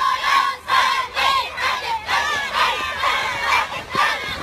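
A large group of children shouting together in a rhythmic chant, about two shouts a second, as they move in step as one formation.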